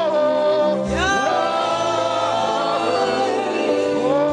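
Gospel worship singing: a choir with a lead voice over a sustained instrumental bass line. The voices hold long notes, with an upward slide about a second in.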